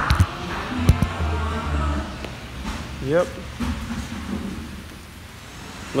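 Handling noise from a phone held close to the microphone as it is moved: a few knocks and rubs, the sharpest about a second in, followed by a low hum.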